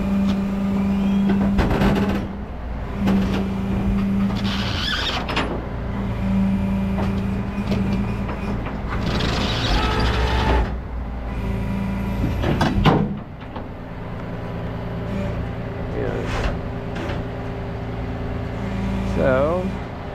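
Rollback tow truck running with its bed hydraulics, a steady pitched hum that swells and eases in stretches as the bed is worked. There are two short bursts of hiss about five seconds apart and a sharp knock just past halfway.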